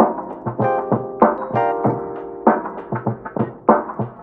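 Background music led by piano: a run of quick, short notes in a light, bouncy rhythm.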